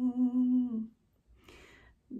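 A woman humming a held note a cappella with a slight vibrato, fading out a little under a second in; a soft breath in follows near the end.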